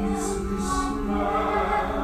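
Musical-theatre singing with orchestral accompaniment: sustained sung notes, with sibilant consonants heard clearly.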